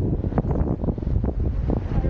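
Wind buffeting the camera microphone: a heavy low rumble broken by many short crackling knocks.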